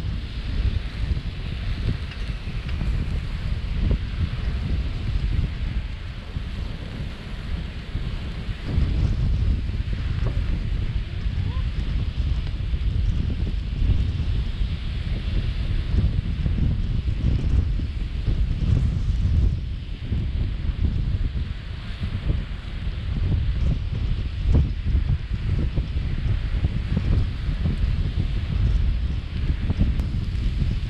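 Wind off the sea buffeting the microphone in uneven gusts, a heavy low rumble with a fainter hiss above it.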